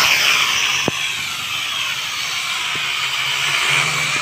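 Toy quadcopter's small electric motors and plastic propellers spinning close up, giving a steady high-pitched whine with a slight waver in pitch.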